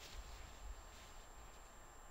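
Near silence: quiet studio room tone with a faint low hum.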